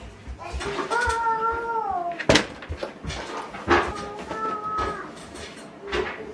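A long high-pitched wordless call that falls in pitch at its end, a sharp click, then a second, shorter call.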